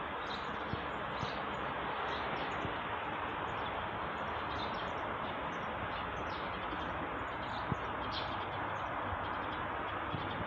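Passenger train hauled by a Korail 8200-class electric locomotive approaching along the track: a steady rumble that builds slightly as it draws nearer. Birds chirp over it throughout.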